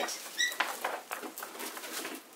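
Paper rustling as a large photocopy is shifted and smoothed over graphite paper on a board, with one brief high chirp about half a second in.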